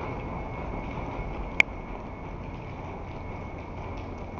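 Steady outdoor background noise picked up by a body-worn camera carried on foot, with one sharp click and a brief ringing tone about one and a half seconds in.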